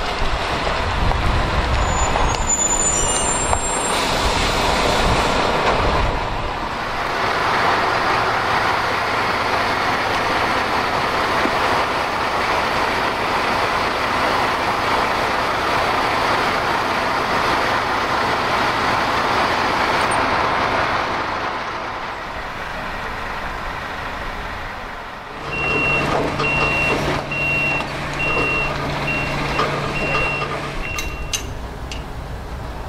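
MAN heavy-haulage tractor unit's diesel engine running as it hauls a loaded low-loader. About 25 s in, the engine settles to a steady low hum and a high reversing alarm starts beeping at an even rate.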